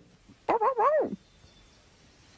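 A cartoon puppy's voiced bark-like call, wavering in pitch and dropping off at the end, starting about half a second in and lasting just over half a second.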